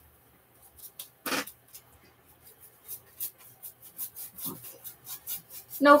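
Paintbrush working acrylic paint onto a stretched canvas: a run of short, soft, hissing brush strokes, several a second, starting a little over two seconds in. A single louder brief sound comes about a second in.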